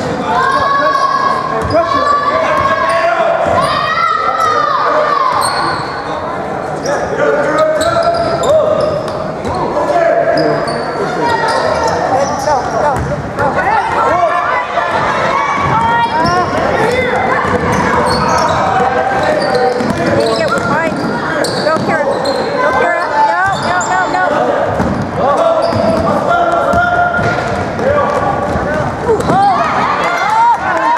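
Basketball bouncing on a hardwood gym floor during play, with voices of players and spectators echoing through the large gymnasium.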